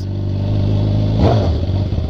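BMW sport motorcycle engine running at low revs on its old exhaust, with a short throttle blip about a second in that rises and falls in pitch.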